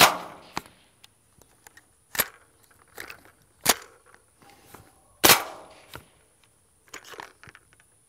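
Suppressed full-auto AR-22 (.22 LR) firing single, separate shots, four of them about one and a half seconds apart rather than a burst, with quieter clicks of the action in between. The gun keeps stopping, which the shooter suspects is a fouled firing pin.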